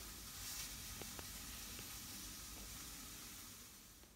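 Faint steady hiss of room tone, with a few light ticks about a second in, dying away near the end.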